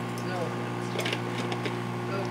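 A microwave oven hums steadily while running. Over the hum come a few light clicks as a spice jar is handled over the stovetop.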